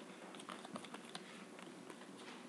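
Faint, irregular light clicks and rustle of a deck of oracle cards being shuffled by hand.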